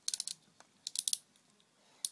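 Quick clattering clicks of wooden and plastic toy railway pieces being handled, in two short bursts about a second apart.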